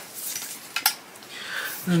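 Tape measure being handled and pulled across a crochet blanket: two small sharp clicks a little under a second in, amid soft rustling.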